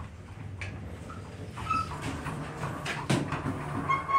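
Traction elevator car: a low steady hum from the running equipment with scattered clicks and knocks from the car, a short electronic beep about two seconds in and another beep near the end.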